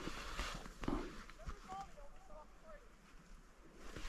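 A quiet stretch outdoors with no engine running: a few soft rustles and steps through dense young spruce in the first second, then several faint short chirps in the middle.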